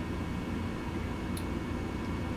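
Steady low hum and hiss of an idle electric guitar amplifier rig, with one faint click about a second and a half in.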